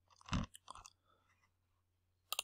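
Two brief mouth noises close to the microphone, about a third of a second in and again just before one second in, then near silence.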